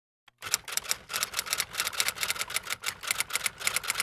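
Typewriter keys clattering in a fast, steady run of sharp clicks, about eight a second, starting about half a second in.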